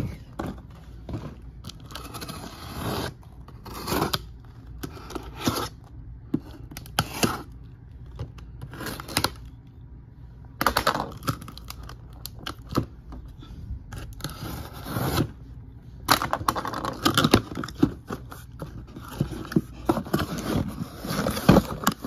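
Cardboard shipping case being opened by hand: packing tape scraped and torn and the flaps pulled apart, in a series of short, irregular scraping and tearing bursts.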